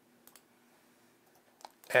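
Quiet room tone broken by a few faint, short clicks: two close together about a quarter-second in and a sharper one shortly before the end, after which a man starts speaking.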